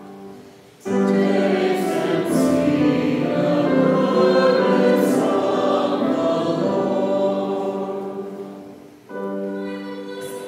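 Many voices singing the psalm refrain together with the soprano cantor, with piano accompaniment. The group comes in suddenly about a second in and dies away near the end, where the solo soprano carries on alone.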